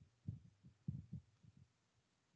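Near silence, with a few faint, short low thumps scattered through it.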